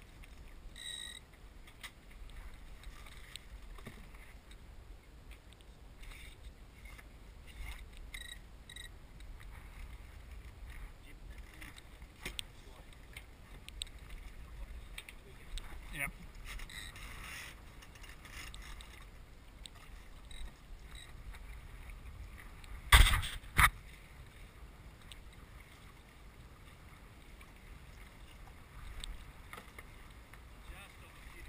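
Wind and water noise aboard a Farrier F-22R trimaran under sail, a steady low rumble with a few faint ticks. Two loud sharp knocks close together about three-quarters of the way through.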